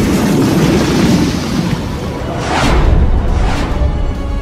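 Dramatic background music under heavy booming impact sound effects with a low rumble, and two more hits in the second half that sweep down into booms.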